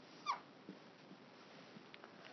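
Dry-erase marker squeaking once on a whiteboard as a stroke is drawn: a short squeak falling quickly in pitch, followed by a few faint ticks.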